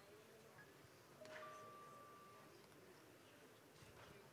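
Near silence: faint room tone, with a faint steady tone for about a second starting a little over a second in.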